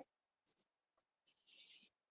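Faint strokes of chalk on a chalkboard as lines are drawn: a short scrape about half a second in, and a longer one of about half a second near the end.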